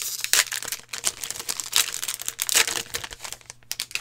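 Foil trading-card pack wrapper being torn open and crinkled by hand, an irregular crackling that dies away shortly before the end.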